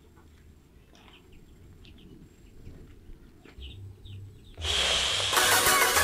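Quiet rural background with faint scattered bird chirps. About four and a half seconds in, a much louder sound cuts in: a bright hiss, then several steady pitched tones that carry on to the end.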